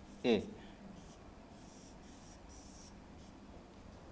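Marker pen writing on a whiteboard: several short, faint scratchy strokes as a formula is finished and boxed.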